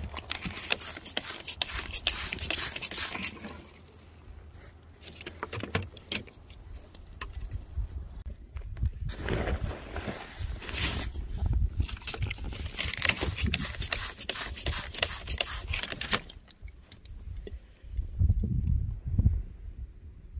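Rock and gritty dirt scraping and clattering in several bursts as a chunk of jasper is worked out of the ground and handled.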